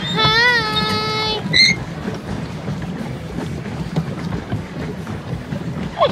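Pedal boat under way on a pond: a steady low churning of the paddle wheel and water against the plastic hull. A person's drawn-out vocal call fills the first second or so, followed by a brief high squeak.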